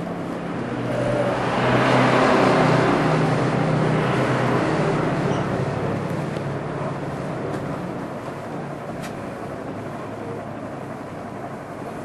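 A vehicle passing by: its noise swells over the first two seconds and then slowly fades, over a steady low hum.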